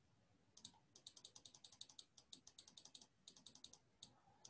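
Faint computer keyboard typing: a quick, uneven run of keystroke clicks that starts about half a second in and stops just before the end.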